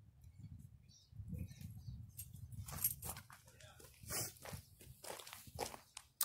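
Scattered short rustles and clicks of a halter and strap vest being fastened on a goat, with the goat shifting about, over a low rumble; the clicks start about two seconds in.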